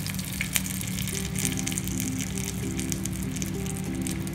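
Melted butter sizzling in a hot nonstick wok, a steady fine crackle of small pops, under background music with a slow melody of held notes.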